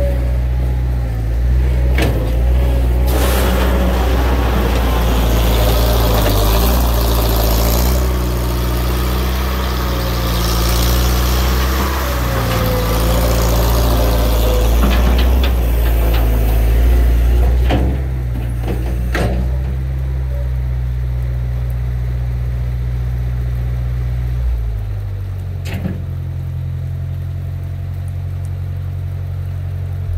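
Bobcat 630 skid-steer loader's engine running hard while it works a gravel stockpile, with a rushing noise over it for the first part. Its pitch drops to a lower, steady idle about 25 seconds in. A few sharp knocks come along the way.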